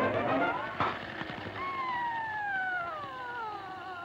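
Cartoon soundtrack music with sliding-pitch effects: a rising glide, a sharp knock about a second in, then a long, slow downward pitch slide that runs to the end.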